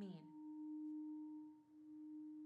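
A steady, pure low tone held as a drone under the dialogue, dipping briefly near the end: a sustained note in the film's horror underscore.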